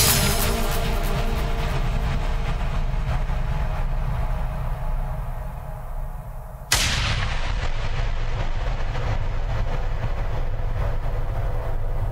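Synthesized explosion sound effect: a blast rumbles and fades over several seconds, then a second sudden blast comes about two-thirds of the way through, its low rumble carrying on steadily.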